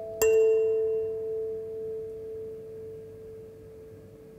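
Sansula kalimba: one metal tine plucked about a fifth of a second in, its note ringing out in a long, slow decay, while a higher note plucked just before fades away underneath.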